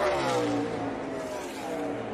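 NASCAR Xfinity Series Chevrolet Camaro stock car's V8 engine at full speed passing by, its pitch falling as it goes past, then running steadily as it pulls away.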